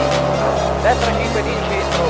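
Background music over the in-car sound of a Renault Twingo rally car driving on a gravel road.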